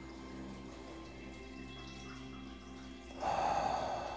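Background music of sustained held notes. About three seconds in, a deep breath is drawn in, one of a series of slow, paced meditation breaths.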